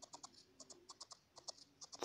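Faint, quick, irregular clicks, about seven or eight a second: a barbed felting needle jabbing into loose white wool over a felt base, the crunchy poking of needle felting.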